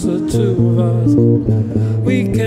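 Double-neck guitar played live: plucked chords over a steady low bass note, between sung lines.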